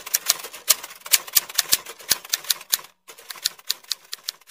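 Typewriter key clicks, fast and irregular at about five or six a second, with one short break about three quarters of the way through.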